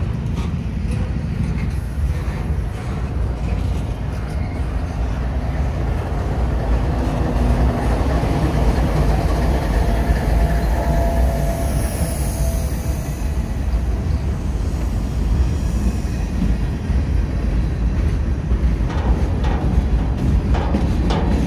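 Freight train passing close by: a steady rumble of steel wheels on the rails. A mid-train diesel locomotive goes by around the middle, with a brief high-pitched wheel squeal just after it.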